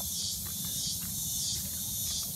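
A dense, steady, high-pitched chorus of tropical insects, swelling and dipping slightly, with a low rumble underneath.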